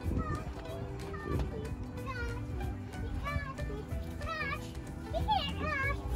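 Young children's high voices calling and squealing at play over background music, the calls loudest near the end.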